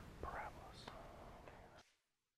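Faint room noise with a brief soft whisper-like sound in the first second, then the audio cuts off suddenly to dead silence near the end as the recording stops.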